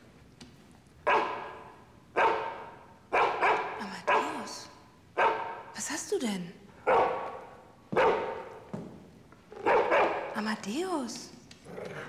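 Golden retriever barking: about ten sharp barks roughly a second apart, starting about a second in, with a few short wavering whines between them.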